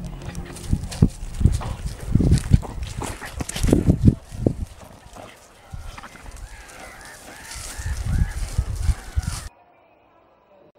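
Dogs playing and digging on dry grass: irregular low thumps and rustling, then a run of short, high whines over the last few seconds. The sound cuts off suddenly near the end.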